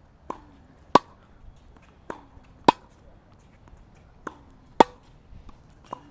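Tennis rally: a racket strikes the ball with a sharp pop three times, about every two seconds, with fainter ball impacts between the strikes.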